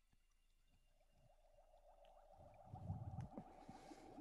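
Near silence, with faint rustling and a few soft bumps growing slightly louder through the middle as a person shifts position on a yoga mat.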